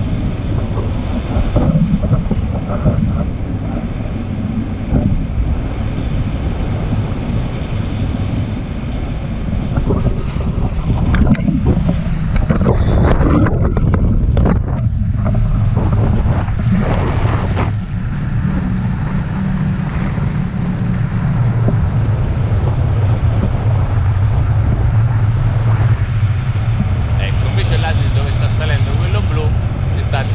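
Wind rushing over the action camera's microphone on a paraglider in flight, a continuous loud buffeting, rougher and louder for several seconds around the middle.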